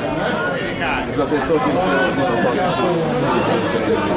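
Several voices talking over one another at once: loud, unbroken chatter close to the microphone, with no single clear speaker.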